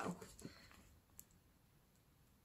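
Near silence with faint handling of a paperback book as its cover is folded open, and a single small click about a second in.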